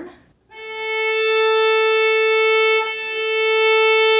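Viola bowed on the A string: one sustained note at about A 440, in long full bow strokes with a bow change about three seconds in. The bow is led by the arm rather than pressed down with the index finger, so the string rings more freely.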